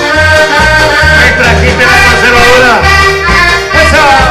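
Live dance-band music led by an accordion, playing over a pulsing bass line of about two notes a second.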